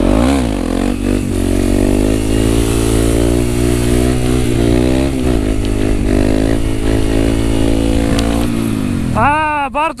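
Honda CRF250 supermoto's single-cylinder four-stroke engine through a Yoshimura exhaust, held at steady high revs while the bike is up on its back wheel in a wheelie. The revs sag briefly about five seconds in, then the throttle closes near the end. The rider complains that the bike lacks the power to lift the front in third gear, which he suspects is a fuel-system fault.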